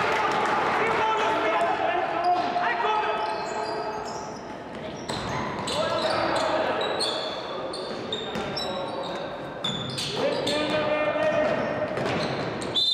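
Basketball game play on a wooden gym floor: the ball bouncing, short high sneaker squeaks, and players and coaches shouting, echoing in the hall.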